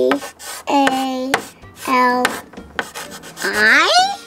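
Chalk scraping across a chalkboard in short strokes as letters are written, between a child's long held vocal notes; near the end her voice slides upward in pitch.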